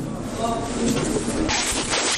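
People's voices talking in the hall, with a rush of rustling noise from about one and a half seconds in.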